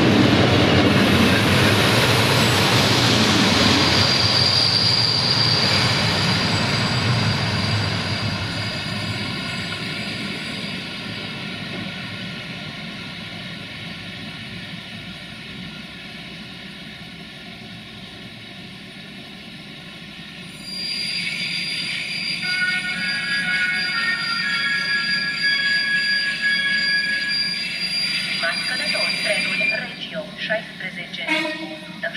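Passenger coaches rolling past on the rails, loud at first and fading as the train draws away. About twenty seconds in, a high steady squeal of brakes and wheels sets in for several seconds as the train slows to a stop.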